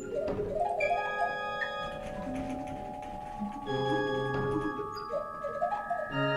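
Pipe organ recorded from inside its wind chests: several pipes hold steady tones while quick rising runs of short notes sound near the start and again near the end. Faint clicking from the pipe valves runs alongside.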